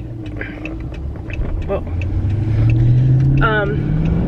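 Car engine and road noise heard from inside the cabin, the engine note rising steadily in pitch and growing louder as the car accelerates.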